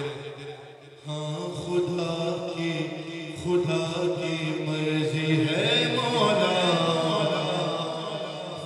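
A man chanting a manqabat, an Urdu devotional poem, into a microphone. He holds long notes from about a second in, with a winding melodic run a little past the middle.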